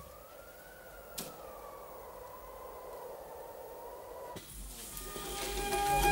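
A single long electronic-sounding tone on the soundtrack that rises slightly, slowly sinks and holds, then cuts off suddenly; about five seconds in, folk-style music with flute and fiddle swells in.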